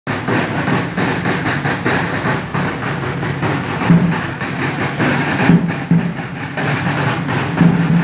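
Drums beaten in a steady, repeating rhythm, loud against a busy background of street noise.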